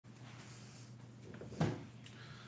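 A single sharp knock about one and a half seconds in, made as a person settles at a table, over a low steady hum.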